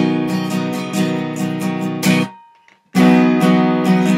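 Acoustic guitar, capoed at the fourth fret, strummed chords that cut off sharply a little over two seconds in. After a gap of most of a second the strumming comes back in: one of the deliberate stops in the song's strum pattern.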